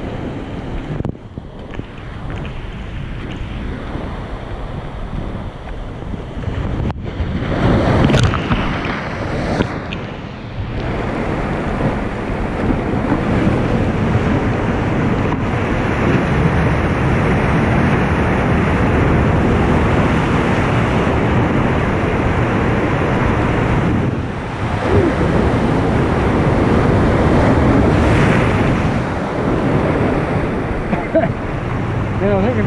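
Ocean surf washing against a rocky seawall, with wind buffeting the microphone. A wave surges about eight seconds in, and the surf stays loud through most of the second half.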